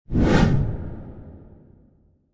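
Whoosh transition sound effect with a deep low rumble. It starts sharply just after the beginning, is loudest at about half a second, then fades out over the next second and a half.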